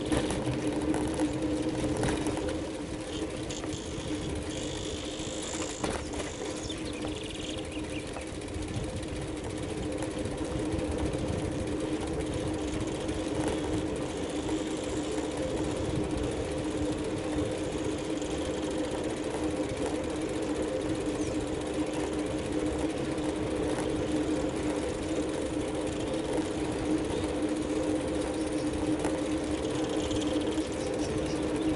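Bicycle rolling along an asphalt road: a steady mechanical hum from the moving bike. Faint high chirping comes in a few seconds in.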